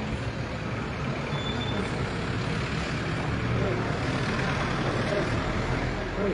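Steady rumble of a nearby motor vehicle running, swelling slightly around the middle, with indistinct voices underneath.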